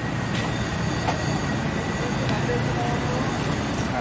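Steady low rumble of a motor vehicle running close by, with a faint steady high whine and a few light clicks.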